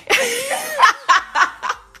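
A person laughing: a breathy opening, then a run of about four short bursts of laughter that dies away near the end.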